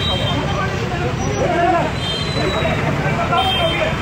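A crowd of people talking and shouting over one another, several voices at once, over a steady low rumble.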